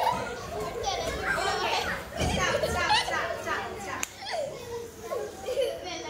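A group of young children's voices chattering and calling out all at once, several voices overlapping with pitches sliding up and down. A single sharp click stands out about four seconds in.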